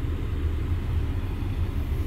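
Renault Kadjar 1.5 dCi four-cylinder diesel engine idling, a steady low rumble heard inside the car.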